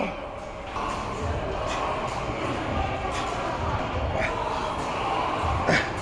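Busy gym hall background: indistinct voices and general room noise in a large reverberant space, with a sharp knock near the end.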